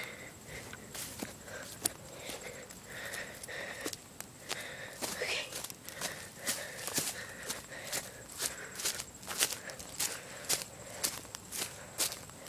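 Footsteps through grass, twigs and dry leaf litter: irregular short crunches and snaps, coming faster in the second half.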